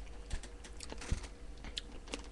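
Handling noise from a camera being picked up and carried: scattered light clicks and taps, with two soft thumps about a third of a second and about a second in.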